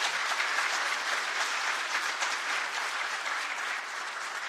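Audience applauding, steady and easing off a little near the end.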